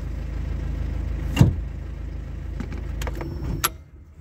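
Car engine idling, heard from inside the cabin, with one sharp knock about a second and a half in. Near the end come a few short clicks and the engine's low rumble cuts off as it is switched off.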